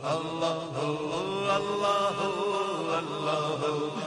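Male voices chanting a slow, drawn-out devotional naat refrain over a sound system, unaccompanied, with long gliding held notes.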